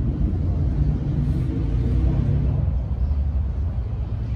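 Loud, low, steady rumble of outdoor street ambience.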